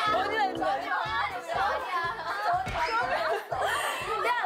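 Young women talking excitedly and laughing over background music with a steady beat.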